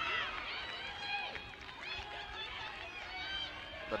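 Pitch-side ambience of a women's football match: several distant voices shouting and calling across the field over low background crowd noise.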